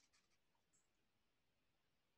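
Near silence: a pause between spoken announcements.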